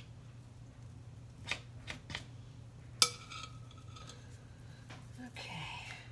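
Light handling noises as dough is taken from a mixing bowl: a few soft clicks, then one sharp clink against the bowl about halfway through that rings briefly. A steady low hum runs underneath.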